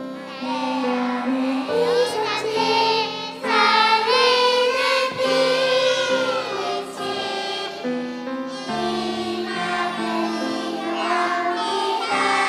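A children's choir singing a worship song in Korean, voices in unison carrying a slow, sustained melody.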